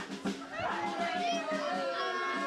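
Several voices yelling and whooping over one another, with one long falling call through the second half.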